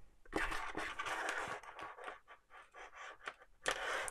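A charging cable and its plastic-and-metal connectors rustling, scraping and clicking against a tabletop as they are handled. The sounds come as a dense run of short scrapes in the first second or so, then scattered small ticks, with a louder scrape near the end.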